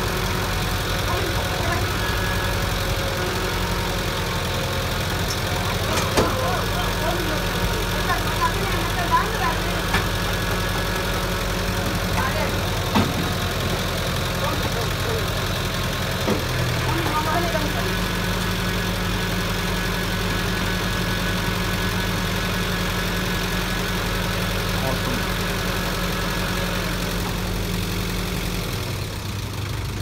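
Tow truck engine running steadily while its crane holds and lowers a car, the note stepping up in pitch about halfway through and dropping away near the end. A few sharp metal knocks.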